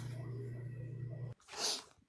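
A faint steady low hum that cuts off suddenly, followed about a second and a half in by one short, hissy burst of breath from a person.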